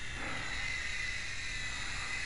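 Faint, steady high electric whine of a FlyZone PlayMate micro RC airplane's electric motor and propeller in flight, over a steady hiss.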